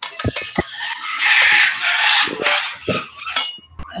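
Knocks and clatter of stainless steel mixing bowls and kitchen utensils being handled on a table, with a loud hissing noise in the middle.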